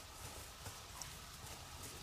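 Faint scratching and crumbling of dry soil as fingers brush it aside, with a couple of small soft ticks from falling clods.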